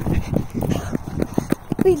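Quick, rhythmic footfalls of someone running on a dirt field path, with the handheld phone jostling at each step.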